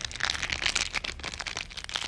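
Cellophane crinkled by hand as a sound effect imitating a crackling forest fire: many quick, sharp crackles one after another.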